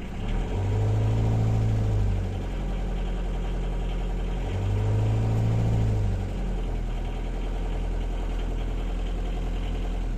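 Perkins 4.108 four-cylinder marine diesel idling, revved twice with the throttle: about half a second in and again about four and a half seconds in, the pitch rises and falls back to a steady idle over about two seconds each time. The engine picks up and settles cleanly, running as it should.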